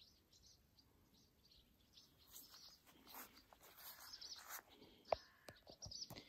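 Near silence with faint bird chirps, thickening from about two seconds in, and a single sharp click near the end.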